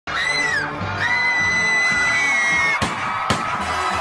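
Live concert music with a high, held tone through the first half, then two sharp percussive hits about three seconds in, over a screaming, cheering crowd.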